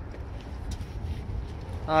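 Footsteps on asphalt, a few faint scuffs, over a steady low rumble, as a person walks across a parking lot carrying the camera.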